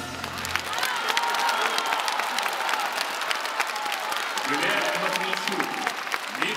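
Large concert-hall audience applauding at the end of a song, dense steady clapping, with the last of the music dying away in the first second. Voices join in near the end.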